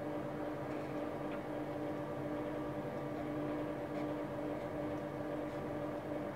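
A steady machine hum with a few fixed tones, unchanging throughout.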